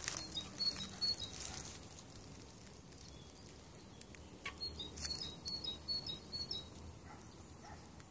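A small bird singing faintly in short, high chirps, in two spells: a brief one at the start and a longer run from about four and a half seconds in.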